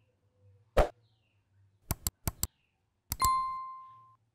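Subscribe-button animation sound effects: a pop about a second in, a run of quick clicks, then a bell ding that rings out and fades near the end.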